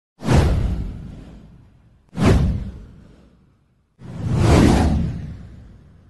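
Three whoosh sound effects for an animated title intro. The first two hit suddenly and die away over about two seconds each; the third swells up about four seconds in and then fades.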